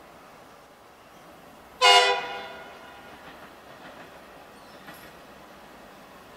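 A V/Line VLocity diesel railcar's horn sounding one short blast about two seconds in, a chord of several tones that fades over about a second. Otherwise faint steady rail and background noise.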